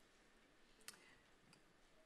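Near silence: faint room tone, with one brief faint click a little before halfway through.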